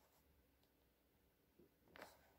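Very faint scratching of a pen writing on paper in a notebook, close to silence, with a slightly louder scratch just before the end.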